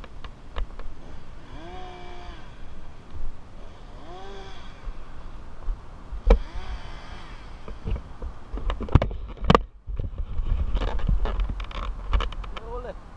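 Climbing gear knocking against a palm trunk a few times, with three short pitched sounds that rise and fall, and wind buffeting the microphone.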